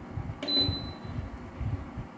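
A single short, high electronic beep from an infrared space heater's control panel about half a second in, the panel acknowledging a button press. The heater's fan runs steadily underneath.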